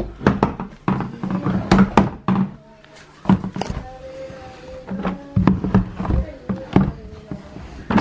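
Laundry being pulled out of a tumble dryer's drum into a plastic basket, with a string of knocks and thumps, over music.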